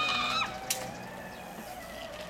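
The end of a long, steady, high-pitched call, held on one note and cut off about half a second in, followed by a single click and a fainter steady tone.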